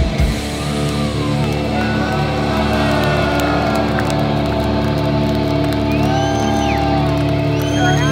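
A live black metal band ends a song: the drums stop about half a second in, leaving a held guitar chord ringing. The crowd cheers and whistles over it.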